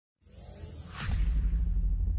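Intro sound effect for an animated logo: a whoosh that swells into a deep bass hit about a second in, the low rumble carrying on afterwards.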